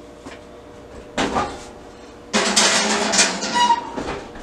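An oven being loaded: a short scrape about a second in, then a longer metallic rattle and scrape as the paper and pan go onto the oven rack.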